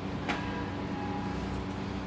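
Steady low hum of room background noise, with one faint click near the start.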